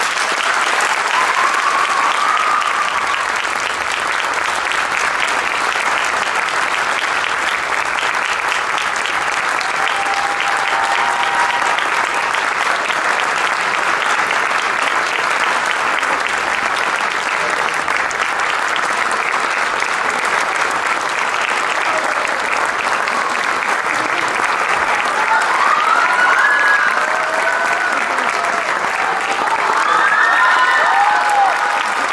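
Audience applauding steadily, with a few voices calling out over the clapping, more of them near the end.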